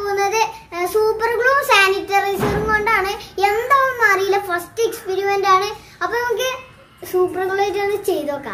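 Only a young boy's voice, talking in a high, fairly level pitch with short pauses.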